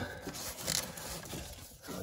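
Soft, irregular scraping and rustling as a hand grabs and handles a yellow plastic-sheathed electrical cable hanging down through a drilled hole.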